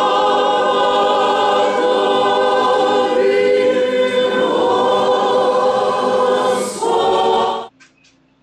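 Choir singing Byzantine-rite liturgical chant, many voices holding long chords that shift about halfway through, breaking off suddenly near the end.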